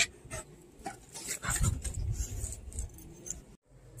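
A Rottweiler fidgeting as its head and ears are rubbed, its collar tags jingling in scattered light clicks. The sound cuts off abruptly near the end.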